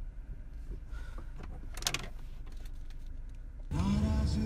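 Low, steady rumble of a car cabin on the move, with a few short clicks. Just before the end a louder sound with a steady pitch cuts in.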